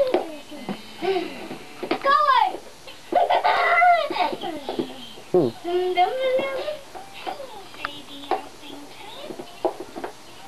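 Young children's high-pitched voices: wordless babbling, squeals and giggles that slide up and down in pitch, with a few light knocks in between.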